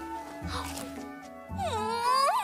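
Background music with held notes over a low bass. About a second and a half in, a drawn-out voice-like sound begins, sliding down in pitch.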